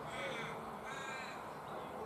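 A crow cawing: two calls in quick succession in the first second and a half, part of a repeated series.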